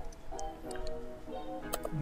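Soft background music with long held notes, and a few sharp mouse clicks close together near the end.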